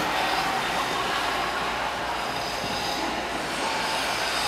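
Steady rumbling hiss of indoor ice rink ambience, with faint whining tones held over it.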